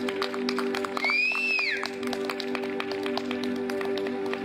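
Korg Triton synthesizer holding a steady, sustained pad chord, with scattered light clicks. A brief high whistling note rises and falls about a second in.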